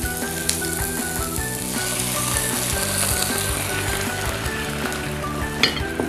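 Onion, tomato, baby corn and cucumber sizzling in a frying pan just after a little water is poured in, stirred with a spatula; a short sharp click near the end.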